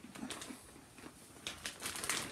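Faint, intermittent crinkling of a large plastic popcorn bag being handled, with the crackles growing busier near the end.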